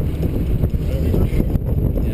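Wind rumbling steadily on a helmet-mounted action camera's microphone at sea, a dense low rumble with no distinct events, over the boat's background noise.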